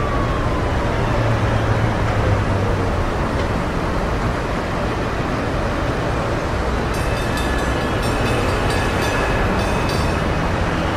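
Steady city street noise, a continuous roar of traffic, with a siren's wail falling and fading away over the first few seconds. Faint thin high-pitched tones come in about seven seconds in.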